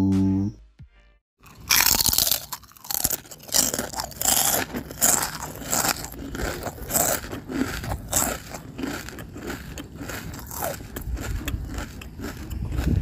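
Intro music and sound effects: a held tone breaks off, a brief silence follows, then a dense crackling, noisy texture of rapid clicks runs on.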